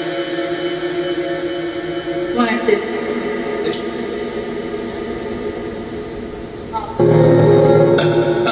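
Ghost box audio: radio-sweep fragments from the SCD-1 app played through the Portal's echo and reverb, heard as long, smeared music-like tones with bits of speech. The tones shift about two and a half seconds in and swell louder for the last second.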